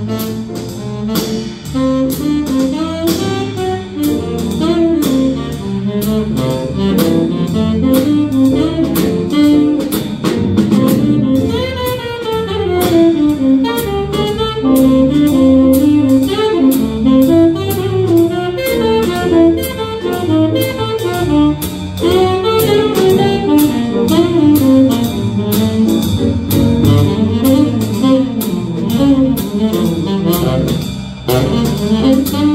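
Small jazz combo playing: a saxophone carries a moving melodic line over piano, electric bass and drum kit, with a steady cymbal beat.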